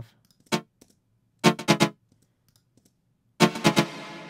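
Soloed techno chord stab on playback through a parallel reverb chain: a single short hit, then three quick hits about a second and a half in, then three more near the end, whose reverb tail rings on and fades away.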